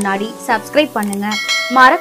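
A short bell-like chime sound effect, ringing tones near the end, over background music and a man reading the news in Tamil.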